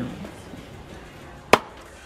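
A single sharp knock about a second and a half in, over low room tone.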